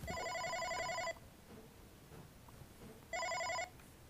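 Siemens/Unify OpenStage 40 desk phone ringing for an incoming call: an electronic warbling ringtone for about a second, a two-second pause, then a shorter ring that stops abruptly as the call is answered with the headset button.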